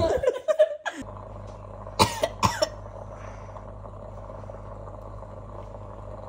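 A person coughing twice, about half a second apart, over a steady low hum.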